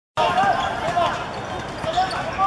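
Footballers shouting to each other during play, with a few dull thuds of the ball being kicked and feet on the pitch.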